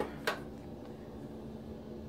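Bathroom exhaust fan running with a steady low hum. A single brief click comes about a quarter second in.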